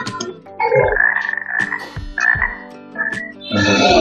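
Frog croaking sounds, a few rough calls about a second in and again just past two seconds, over steady low background music from a jungle-themed online quiz game.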